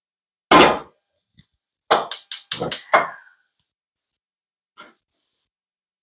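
A stainless steel pot full of water and sliced potatoes is set down on a gas range's metal grate with one loud clang. About a second later comes a quick run of five or six sharp metallic clanks and clicks, then one faint knock near the end.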